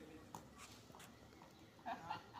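Near silence with a few faint taps, and a short voice-like sound near the end.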